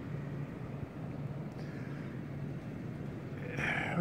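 Small Generac portable inverter generator running steadily, a low even hum under outdoor background noise.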